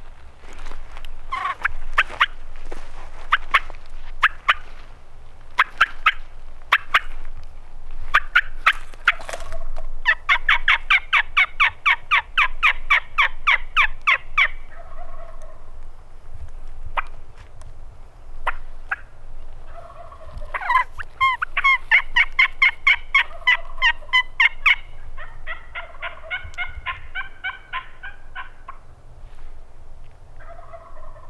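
Turkey calls at close range: scattered sharp single notes for the first ten seconds, then long runs of fast, evenly spaced notes, about seven a second, each run lasting about four seconds, starting about ten, twenty-one and twenty-five seconds in.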